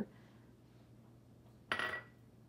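A small glass prep bowl set down with a single brief clink near the end, ringing briefly; otherwise faint room tone.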